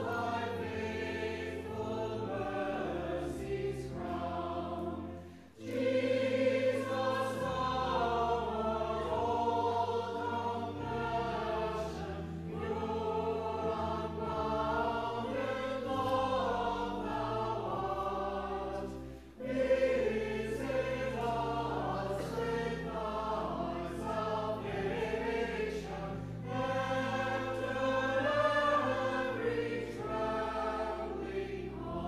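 A church choir singing a choral anthem in parts over low sustained accompaniment notes, breaking off briefly between phrases about five seconds in and again near twenty seconds.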